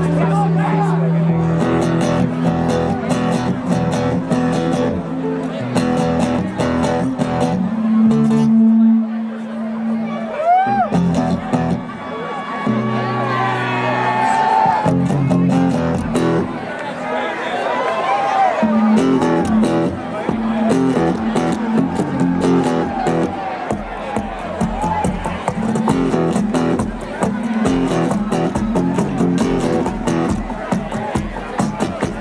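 Two amplified acoustic guitars played live in a metal medley, chords and riffs with a driving rhythm, starting abruptly after a short silence.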